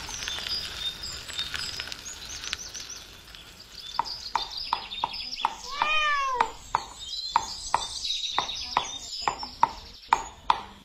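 Small birds chirping in the background. From about four seconds in, a pestle knocks steadily in a small mortar, about three strokes a second, as the old man pounds. Near the middle a cat meows once, a short wavering cry.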